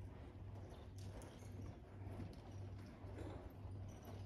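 Quarter Horse's hoofbeats on the soft dirt footing of an indoor arena, faint and muffled, under a steady low hum.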